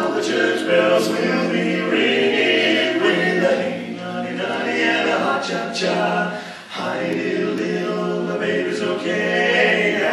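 Male barbershop quartet singing a cappella in close four-part harmony, holding sustained chords that shift together, with a brief break between phrases about two-thirds of the way through.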